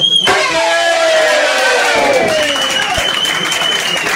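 A final hard strike on the wooden planks of a txalaparta right at the start, then the audience cheering and whooping, with clapping starting up.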